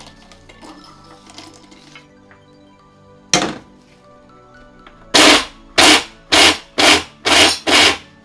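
Electric blender pulse-grinding fried peanuts: one short burst a little over three seconds in, then five short bursts of the motor in quick succession from about five seconds in.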